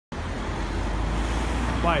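Steady street traffic noise, a low rumble with an even hiss over it.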